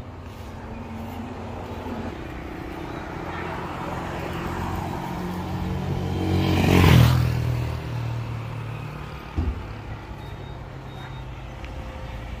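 Diesel engine of a parked Isuzu delivery truck running at idle, steady and low, while a vehicle passes on the road, growing louder to a peak about seven seconds in and then fading. A single short knock comes about nine and a half seconds in.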